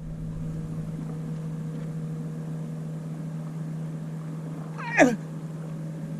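A steady low hum with a fainter higher overtone over a light hiss. A man says one word about five seconds in.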